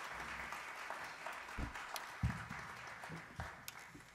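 Concert audience applauding, the clapping thinning and dying away near the end, with a few low thumps in between.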